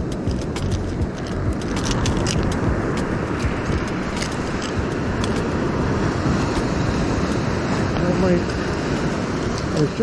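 Steady rushing of surf washing up a sandy beach. A few small metallic clicks and taps come in the first half, from pliers working a lure's treble hooks out of a fish's mouth.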